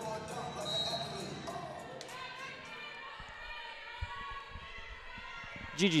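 A volleyball bounced a few times on a hardwood gym floor before a serve, each bounce a short thud in a large hall. Music plays over the first couple of seconds and then fades.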